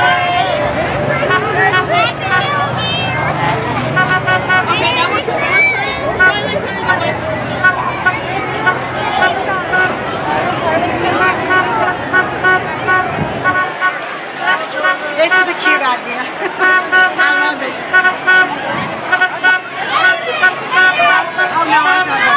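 Parade street noise: people calling out and chattering along the route, a vehicle engine running low until about halfway through, and a horn tooting short repeated beeps in several runs.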